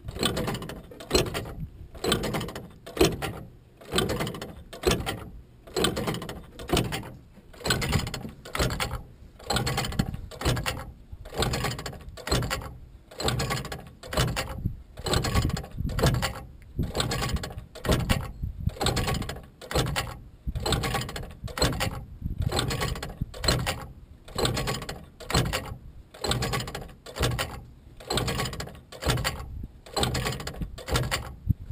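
Magnetic Flagman wigwag railroad crossing signal running on 12 volts, its swing arm clacking back and forth in a steady, even rhythm as the magnets pull it from side to side.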